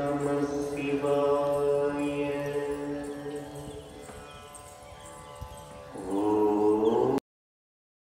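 Devotional mantra chanting in long, drawn-out held tones. It fades toward the middle, rises in pitch and swells again about six seconds in, then cuts off abruptly shortly before the end.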